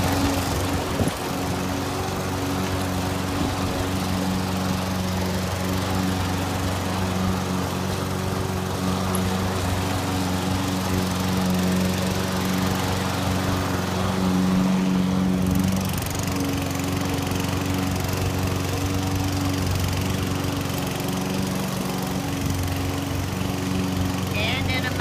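Toro walk-behind gas lawn mower with a bag running at a steady pitch as it is pushed over the grass, sucking up a pile of brushed-out dog hair.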